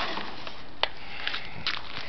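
Faint handling noise with one sharp click a little under a second in and a couple of softer ticks after it, from a turkey and its aluminum pan being handled at a grill.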